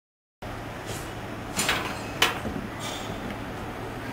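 Dead silence for the first half-second, then gym room noise with a steady low hum. About midway come two sharp knocks a little over half a second apart.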